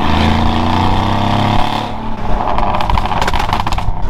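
Mercedes-AMG G63's twin-turbo V8 through a full Quicksilver exhaust, heard inside the cabin, pulling with slowly rising pitch. About halfway it eases off into a rapid crackle of exhaust pops on lift-off.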